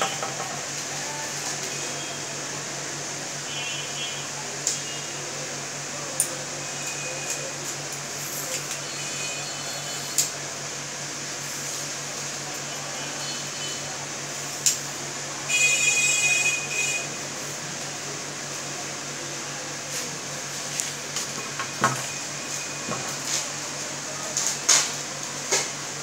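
Scattered sharp clicks and knocks of a telescoping metal selfie stick being pulled out, swung and handled, over a steady room hum. A louder buzzing high-pitched sound lasts about a second and a half a little past the middle.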